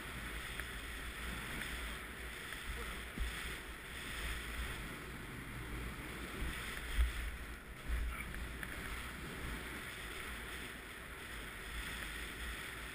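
Snow hissing steadily under a rider sliding down through deep powder, with wind buffeting the body-mounted camera's microphone. A couple of louder bumps come about seven and eight seconds in.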